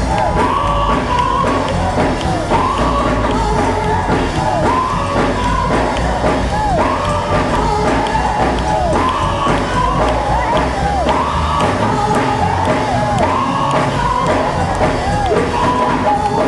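Gospel choir singing with band accompaniment. The music is loud and continuous, over a strong, steady bass, with voices sliding up and down in pitch.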